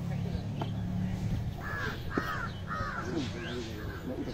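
A crow cawing three times in quick succession about halfway through, harsh calls roughly half a second apart, over low murmuring voices.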